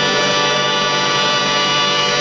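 A harmonium holding one steady, sustained chord.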